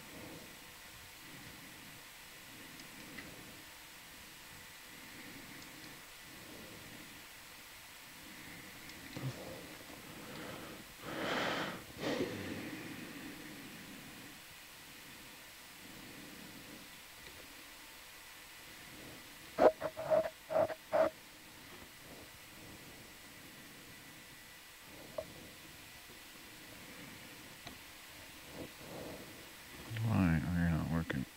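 Faint steady hiss of an open intercom/comms audio channel, with a short rushing noise about eleven seconds in and a quick run of four short beeps around twenty seconds in.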